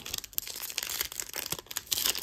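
Foil trading-card pack wrapper crinkling as hands grip it and work it open at the crimped seam, a fast, irregular crackle.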